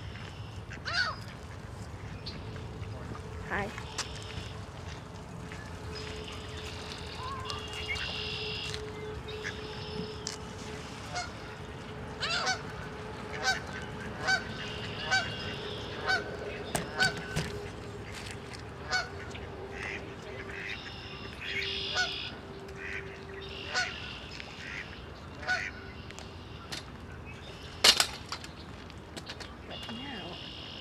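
Waterfowl calling: short repeated calls about once a second, busiest through the middle of the stretch, over a steady faint hum. A single sharp click near the end is the loudest sound.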